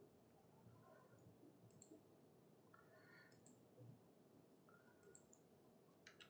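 Near silence with a few faint computer mouse clicks spread through it.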